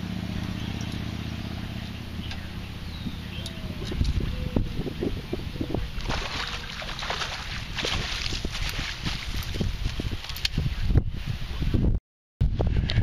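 A steady low engine hum for the first few seconds. From about four seconds in, irregular splashing and knocking as a pike is netted out of the water.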